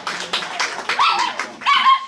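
Dog-like yelps, short calls rising and falling in pitch, about a second in and again near the end, over a steady strummed or clapped beat.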